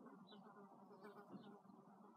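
Near silence: faint room tone with a low hum and a few brief faint high chirps.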